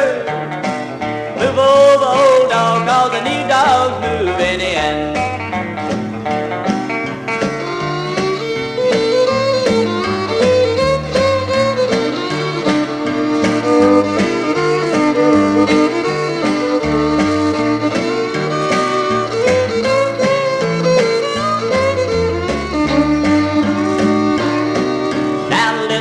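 Instrumental break in a mid-1960s country record: a small country band playing with no singing, over a bass that steps steadily from note to note.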